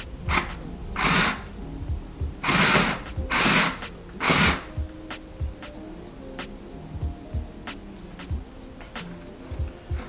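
Electric sewing machine stitching through fabric, run in five short bursts on the foot pedal over the first few seconds, followed by light clicks.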